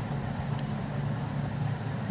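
A steady low background hum with no change through the stretch, like a fan, motor or distant traffic.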